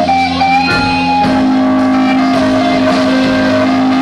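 Live rock band with an electric guitar playing a lead of long held notes that slide and bend in pitch, over a steady held low note.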